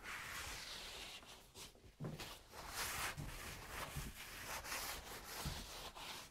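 Window frame wiped by hand with a damp sponge or towel, removing cream cleaner: a run of irregular rubbing strokes with brief pauses between them.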